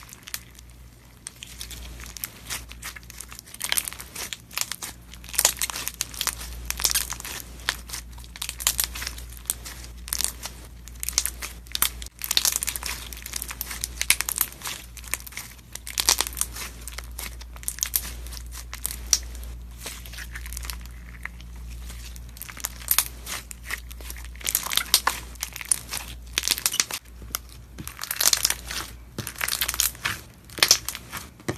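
Clear slime packed with soft cubes being squeezed, pressed and stretched by hand, giving a dense, irregular run of sticky crackles, pops and clicks that comes in louder clusters as the hands press down.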